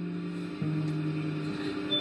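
Acoustic guitar chords ringing on between sung lines, with a new chord and a lower bass note struck about half a second in, in a small tiled room.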